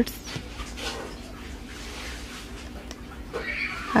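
Faint household background noise, with a brief, faint high-pitched wavering cry about three and a half seconds in.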